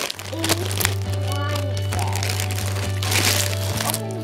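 Plastic wrapping crinkling and crackling as a small toy's packaging is torn open by hand. It runs over background music with a held low note that shifts near the end.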